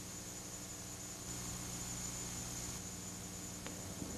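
Steady low hiss with a faint electrical hum and a thin high-pitched whine: background noise of an old broadcast recording, with no other clear sound.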